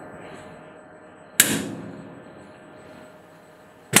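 Steel U-lock under about 4,500 kg of pull in a tensile test machine, with a low steady machine hum: one sharp crack about a third of the way in, then a louder sudden bang at the very end as the rubberized plastic lock body breaks and the machine jaw slips off the lock.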